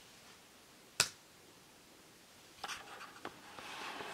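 A single sharp key press on a laptop keyboard about a second in: the Enter key sending a typed search. Near the end come a few lighter clicks and a soft rustle.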